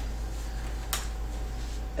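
Quiet room tone with a steady low hum, broken by a single short click about a second in.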